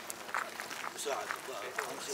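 Footsteps of several people walking on gravel, irregular crunching steps, under indistinct men's voices talking.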